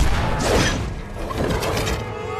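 Film fight sound effects: a loud whoosh of a sweeping angel's wing about half a second in, with metallic clattering and ratcheting clicks.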